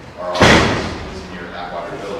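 A single loud slam about half a second in, echoing in a large hall.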